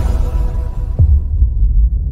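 Logo-intro music sting: a deep falling bass drop about a second in over a low, pulsing rumble, while the higher sounds fade away.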